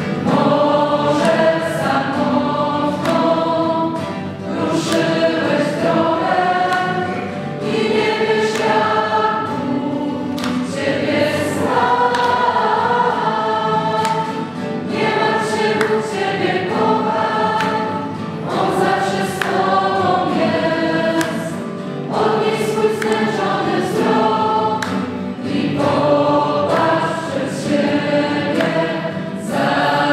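A large group of young people singing a worship song together in chorus, their voices carrying in a reverberant church.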